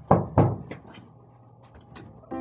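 Two heavy thumps, knocks on or near a wooden door, then a few light clicks near the end as the door's knob and latch are worked to open it.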